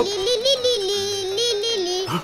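A cartoon child's voice drawn out in one long, wavering, yodel-like note that steps a little up and down in pitch.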